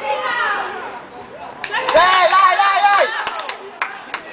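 Several people shouting and yelling outdoors, loudest and most overlapping from about one and a half to three seconds in, with a brief thump near two seconds.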